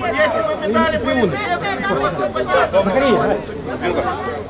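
Several people talking at once: untranscribed, overlapping chatter from the people standing around.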